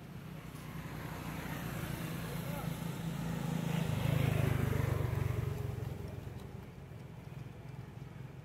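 A motor vehicle passing by: its engine grows louder to a peak about four to five seconds in, then fades away.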